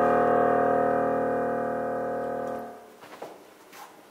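The final chord of a song on a digital piano, held and slowly fading, then cut off as the keys are released nearly three seconds in. A couple of faint knocks follow.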